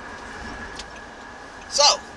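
Steady car cabin noise, an even hum and hiss with a faint steady high tone running through it. A man's voice says one word near the end.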